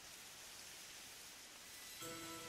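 Near silence: a faint, even hiss of background noise.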